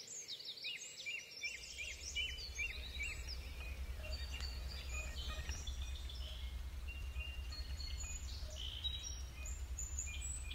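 Several birds chirping and trilling, with a steady low rumble coming in about a second and a half in.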